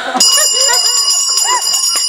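A bell ringing steadily for about two seconds, starting and stopping abruptly, with voices talking underneath.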